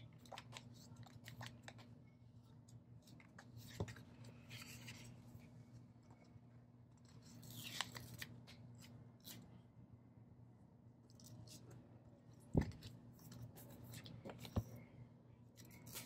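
Quiet paper handling: sticker-book pages turning, a box sticker peeled off its sheet and pressed onto a planner page, with scattered small clicks and rustles and a sharp tap about twelve and a half seconds in, over a faint steady low hum.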